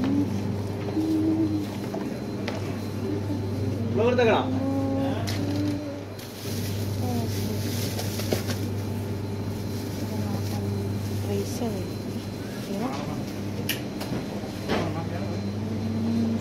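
Supermarket background: indistinct voices of other people, a few light clicks and knocks, over a steady low hum.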